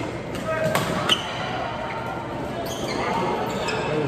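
Badminton rackets striking a shuttlecock during a doubles rally: several sharp pops, the loudest about a second in, echoing in a large hall.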